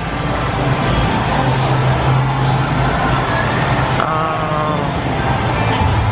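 Loud, steady rumble and hum of a busy indoor bowling and arcade venue, with faint voices about four seconds in.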